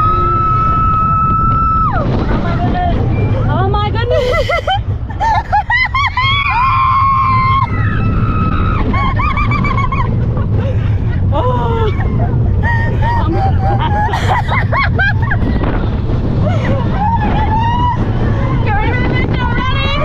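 Riders yelling and cheering on the Slinky Dog Dash roller coaster as it launches and runs, over the steady rumble of the coaster train and wind on the microphone.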